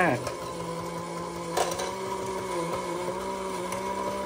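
The battery-driven mechanism of a 1950s W Toys Japan 'Fishing Bears' tin-litho savings bank running with a steady hum as the bear lifts his fishing rod, with a single click about one and a half seconds in.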